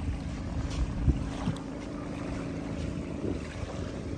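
A boat engine running with a steady low drone, fading out about three seconds in, with wind buffeting the microphone.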